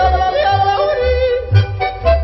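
Background music: a yodelling voice with accordion, over a bass that sounds about twice a second.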